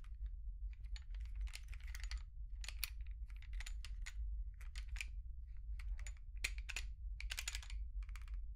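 Small metal parts of a field-stripped pistol being handled with gloved fingers: an irregular run of short clicks and scratchy rustles, with a steady low hum underneath.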